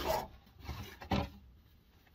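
A DeWalt cordless drill being pulled out of a wooden storage cubby: a few short rubbing scrapes of the tool against the wood, the sharpest a little after a second in.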